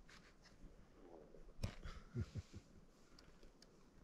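Quiet outdoor background with a few faint, brief sounds and a soft click about one and a half seconds in.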